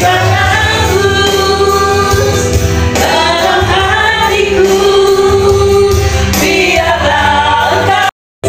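A man and a woman singing a duet through handheld microphones over amplified backing music.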